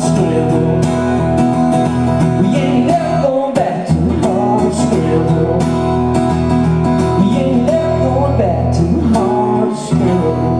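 Live country band playing an instrumental passage: strummed acoustic guitar over steady bass notes, with a wavering melody line on top.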